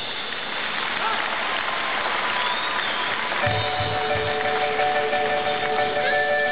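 Audience applauding after a juggling trick. About three and a half seconds in, guitar-led music comes back in with held notes and a beat.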